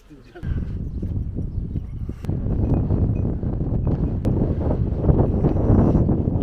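Wind rumbling on the microphone, setting in suddenly about half a second in and going on steadily.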